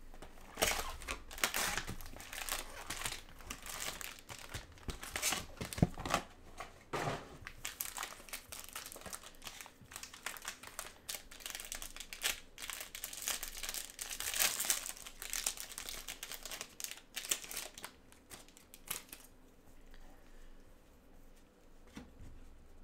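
Plastic wrapper of a 2022 Bowman Draft jumbo pack of trading cards crinkling and tearing as gloved hands rip it open, in dense irregular crackles that die down a few seconds before the end.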